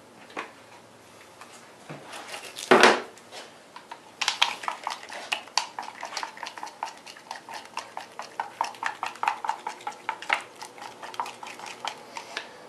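Epoxy being stirred briskly in a mixing cup: quick rhythmic clicking and scraping of the stirrer against the cup, about four strokes a second. There is one louder knock about three seconds in, before the stirring starts.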